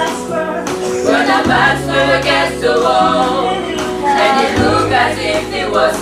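Small choir of women singing a gospel song in close harmony, with sustained low notes underneath that change pitch twice.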